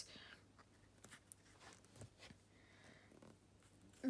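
Near silence: a low room hum with a few faint rustles and light taps from hands moving on the pages of a paperback book.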